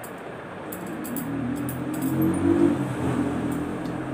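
A motor vehicle's engine passing by: a low steady hum that grows louder from about a second in, peaks midway and fades toward the end. A few faint light clicks come in the first half.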